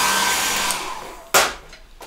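Handheld hair dryer blowing on wet watercolour paper to dry it, winding down about a second in, followed by a single sharp knock.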